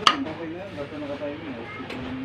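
A person's voice in the background, with one sharp click just after the start and a fainter click near the end.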